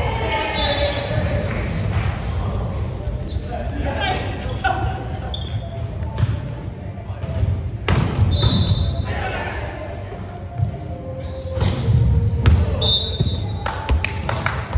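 Indoor volleyball play in a gym hall: a ball struck and bouncing several times, sneakers squeaking on the court floor, and players' voices echoing in the large room.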